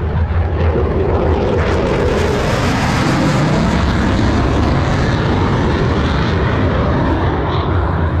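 Twin-engine Boeing F/A-18 Super Hornet jet making a low photo pass overhead: loud jet engine noise that fills the air, its pitch shifting as the jet goes by.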